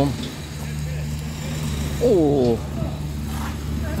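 An engine running steadily at idle, a low even hum, with a short spoken sound about two seconds in.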